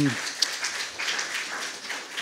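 Audience applause, a crackly patter of clapping, dying away.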